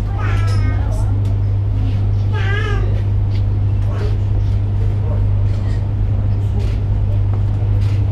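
A steady low hum, with two brief high-pitched wavering vocal sounds from a person, one just after the start and one about two and a half seconds in.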